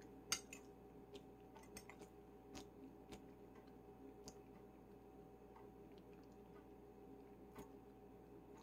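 Quiet eating: faint chewing with scattered light clicks, the loudest one just after the start, over a faint steady hum.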